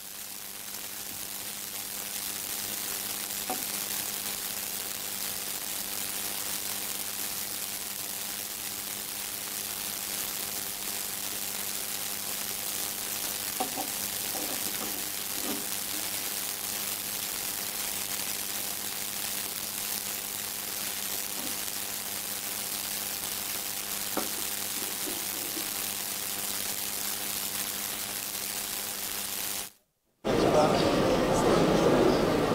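Steady hiss and low electrical hum of a live broadcast feed from a large hall, with faint distant voices now and then. The sound cuts out abruptly just before the end.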